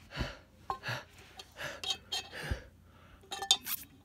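A person breathing in short gasps, about once a second, while sipping a drink through a metal straw from a tumbler, with a few light clinks of the straw against the cup near the end.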